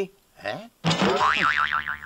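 A comic sound effect with a rapidly wobbling pitch starts about a second in and runs on, after a short spoken "eh?".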